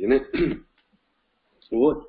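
A man clearing his throat: a few short voiced sounds in the first half second, then a pause, and his speech starts again near the end.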